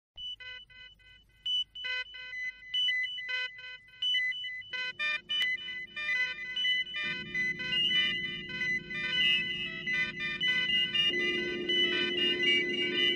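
Early electronic sound effect of the TARDIS taking off: a stream of short, irregular electronic beeps, joined about five seconds in by a steady hum. A low rumble builds under it from about seven seconds and a louder hum enters near the end, so the texture grows denser and louder.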